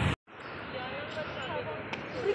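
Outdoor crowd ambience: faint voices of people talking over a steady background rush. The sound drops out briefly just after the start.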